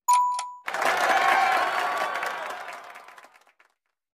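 Logo-intro sound effects: a short steady tone at the start, then a sudden wash of noise that fades out over about three seconds.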